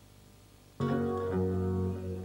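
Faint room tone, then about a second in a nylon-string acoustic guitar starts playing, its low bass notes ringing under a held chord as the song's introduction begins.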